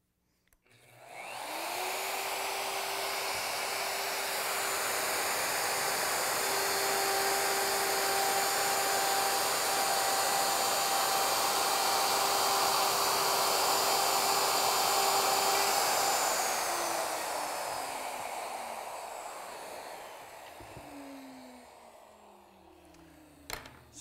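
Handheld plunge router starting up, its whine rising quickly to full speed, then running steadily while it cuts a dado across plywood. About two-thirds of the way through it is switched off and the motor spins down, its pitch falling as it fades over several seconds.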